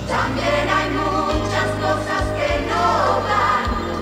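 Spanish-language Christmas pop song: several voices sing together over a band, with the bass note changing about once a second.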